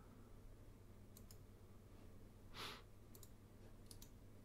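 Near silence with faint computer mouse clicks: two quick pairs and a single click near the end. A soft breath comes about two and a half seconds in.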